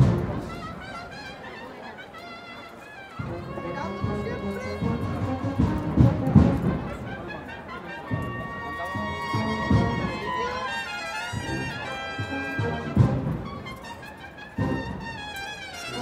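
Agrupación musical, a Spanish processional band of cornets, trumpets, trombones and drums, playing a Holy Week march. The full band comes in about three seconds in, with held brass notes over regular drum beats.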